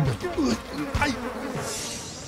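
Mosquito-like insect buzzing, its pitch sliding up and down in short swoops, with a soft high hiss coming in near the end.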